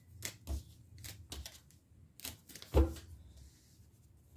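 Gilded Tarot cards being gathered and handled on a tabletop: a series of light clicks and taps of card on card and card on table, with one heavier knock a little under three seconds in.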